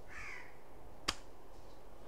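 A faint, brief call-like sound falling in pitch near the start, then a single sharp click about a second in.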